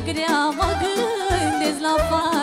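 Live Romanian folk party music: a woman singing into a microphone in a wavering, heavily ornamented line over a band with a steady, even bass beat, played loud through a PA.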